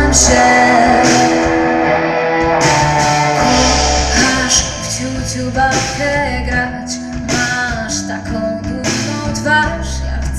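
Live pop-rock band playing in a concert hall, heard from the audience: guitar over bass and drums, with a steady beat.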